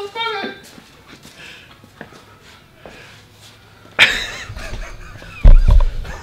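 A man's voice trails off, then there is a quiet stretch with a few small clicks. About four seconds in comes a sudden loud vocal outburst, and near the end a deep rumbling thud of handling noise as someone brushes against the camera.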